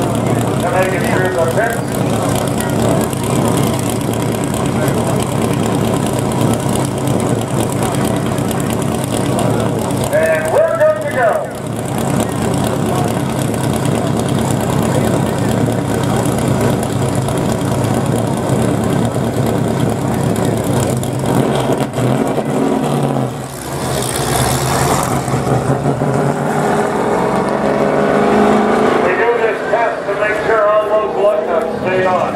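V8 engine of a NASCAR Canadian Tire Series 2010 Ford Fusion stock car idling steadily and loudly, then revving with rising pitch near the end as the car pulls away.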